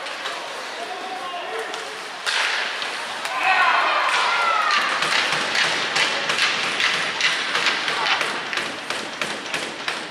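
Ice hockey game sounds: indistinct shouting voices over a busy run of sharp clacks and taps from sticks and puck on the ice. It all gets louder about two seconds in.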